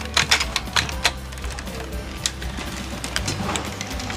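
Sharp plastic clicks and clacks from a large DX Daijinryu dragon robot toy as its parts are handled and repositioned: a quick cluster in the first second, then scattered single clicks. Background music plays underneath.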